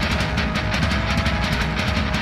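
Instrumental intro of a heavy metal song: guitars and drums playing a fast, even beat, with no vocals yet.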